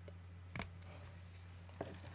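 Quiet room tone with a steady low hum, broken by two faint short clicks, about half a second in and near the end, from plastic marker pens being handled.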